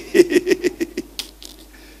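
A man laughing into a microphone: a quick run of short "ha" pulses at a steady pitch, about six or seven a second, that dies away after about a second.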